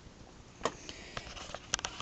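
Faint handling noise in a quiet room: a few small clicks and rustles, with a quick cluster of clicks near the end.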